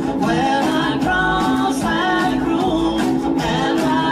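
A rock band playing live: male singing over electric guitars, bass and a steady drum beat.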